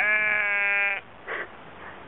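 A sheep bleating once, one steady call about a second long, followed by a short faint sound; the recording is thin and muffled.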